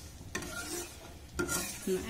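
A metal spatula stirring and scraping in a pan of hot frying oil, with the oil sizzling. Two short scrapes stand out, one about a third of a second in and one about a second and a half in.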